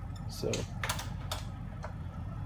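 Three light clicks, about half a second apart, from small tools being handled on a milling machine's table, over a steady low hum.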